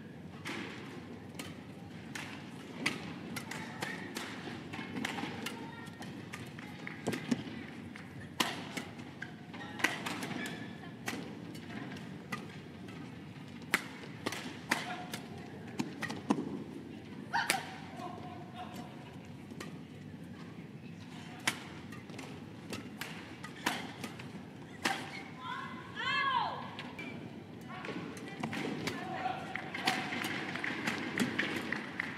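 Badminton rally: rackets striking a feathered shuttlecock in a fast exchange, sharp hits at irregular intervals, sometimes several a second.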